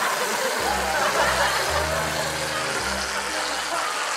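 Aerosol whipped cream can spraying in a long, steady hiss.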